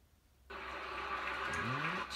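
Near silence, then about half a second in the baseball telecast's audio cuts in suddenly through the TV as the stream starts playing: steady ballpark crowd noise, with a commentator's voice starting near the end.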